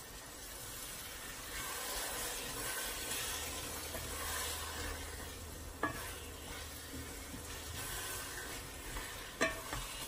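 Wooden spoon stirring bulgur wheat in a hot metal pan, with a steady sizzle from the little water sprinkled in; the sizzle swells about a second and a half in. Two sharp knocks cut through it, one about six seconds in and a louder one near the end.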